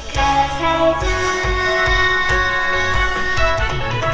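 Music of a song being performed, with a steady beat and sustained melody notes.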